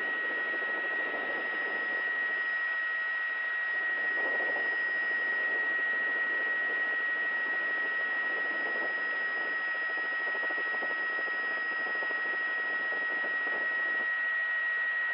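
Helicopter cabin noise heard through the crew's headset intercom: a steady hiss with a constant high whine that holds one pitch throughout.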